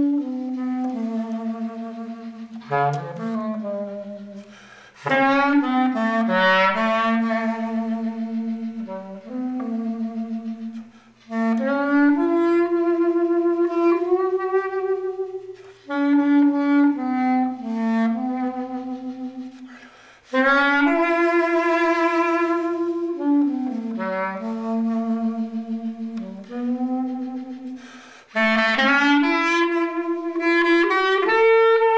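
Solo clarinet playing a slow melody of long held notes, some with vibrato, in phrases of a few seconds broken by short pauses for breath.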